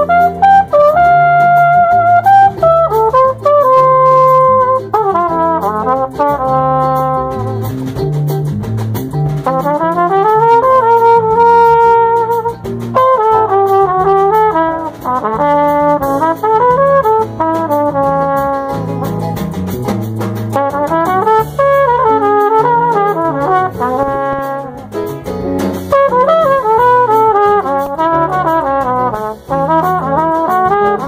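Jazz samba: a brass horn plays a melody of held notes and quick runs over a stepping bass line.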